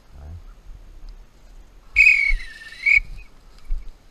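One blast of about a second on a dog-training whistle, high-pitched with a slight dip in pitch in the middle, about halfway through. Soft low thumps come before and after it.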